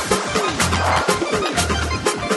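Electronic music from a live set: a deep bass note pulsing in a steady rhythm, short synth notes that slide down in pitch, and busy crisp percussion ticks.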